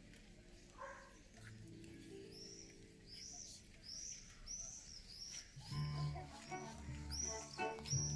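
Quiet orchestral music, held low notes that swell into a fuller, louder passage about six seconds in. Over the music, a run of high, arching bird chirps repeats from about two seconds in.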